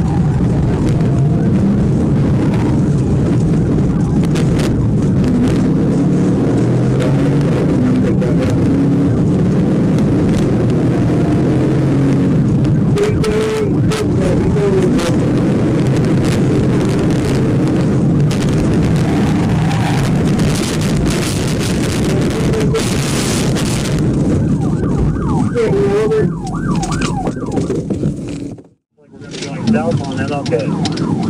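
Cabin noise inside a police patrol car driving fast in a pursuit: steady engine and road noise with a siren wailing faintly in the background and muffled voices mixed in. The sound drops out briefly near the end.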